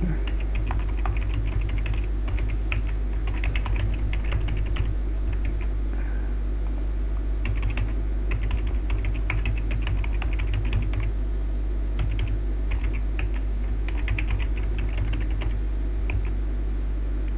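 Typing on a computer keyboard: runs of quick keystrokes in several bursts with short pauses between them, over a steady low hum.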